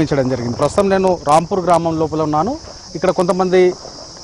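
A voice speaking in Telugu over a steady high-pitched insect-like hum, like crickets.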